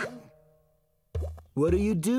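After a brief silence, a cartoon character's wordless vocal sounds begin about a second in, short pitched bursts that bend up and down, over low bass notes.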